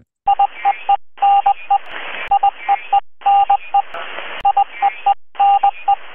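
Electronic sound effect of telegraph-style beeps: one steady pitch tapping out long and short tones like Morse code over a hiss of static, the pattern stopping briefly and starting again about every two seconds.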